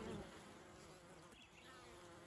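Faint, steady buzzing of honeybees flying around a hive entrance.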